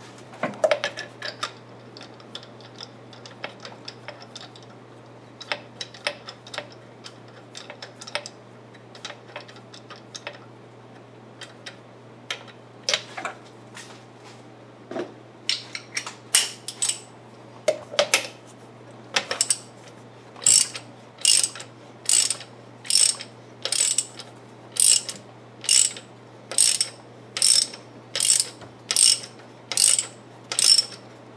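Ratchet wrench clicking on the crank bolt as it is turned to draw a new harmonic balancer onto the crankshaft. Scattered clicks at first, then steady strokes a little more than once a second through the second half.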